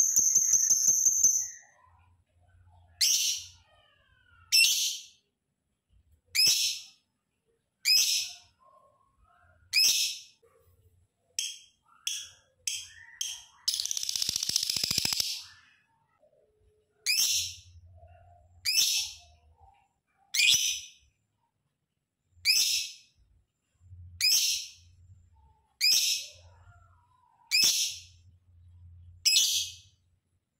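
Lovebird giving short, sharp, high-pitched chirps over and over, about one every one and a half to two seconds. A quick trill comes at the start, and a longer harsh, chattering call comes about halfway through.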